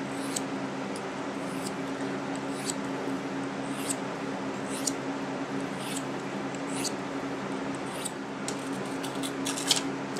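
Light, short strokes of a small Victorinox Classic steel blade drawn along a ceramic rod in freehand honing, about one stroke a second, a few quicker strokes near the end. A steady box-fan hum runs underneath.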